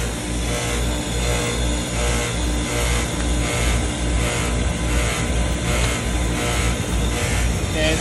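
Lennox heat pump outdoor unit running in heating mode: compressor and condenser fan giving a steady mechanical hum and rush, with a choppy low drone.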